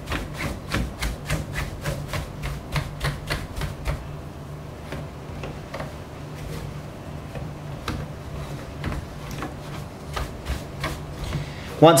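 Stiff bristle brush scrubbing across the faders of a Peavey RQ2310 analog mixing console, in quick back-and-forth strokes of about three a second. The strokes grow sparser in the middle and pick up again toward the end.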